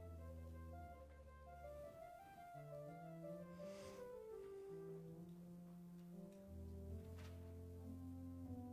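Church organ playing a slow voluntary softly: held chords over sustained pedal bass notes that change every second or two. There are two brief soft noises, one about four seconds in and one near the end.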